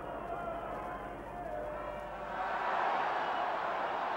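Stadium football crowd noise, a mass of distant voices, swelling louder about two-thirds of the way through.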